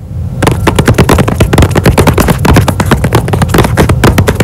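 Fingernails tapping rapidly on a cardboard box, about ten sharp taps a second, recorded close up.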